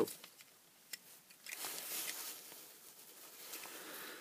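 Faint handling sounds of a small plastic gadget and its USB cable: a light click about a second in, then soft rustling.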